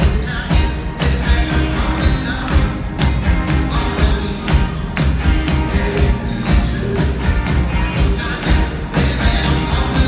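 Rock band playing live and loud: electric guitar and bass guitar over drums keeping a steady beat.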